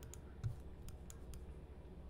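Faint, scattered clicks of a computer mouse, about five or six over two seconds, over a low steady hum.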